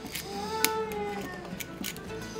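A cat meows once, a single call of about a second that rises and then falls, over background music, with a few light clicks.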